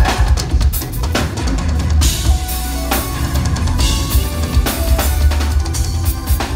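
Live band playing with no vocals: a drum kit's kick and snare hits over heavy bass, joined by held instrument notes from about two seconds in.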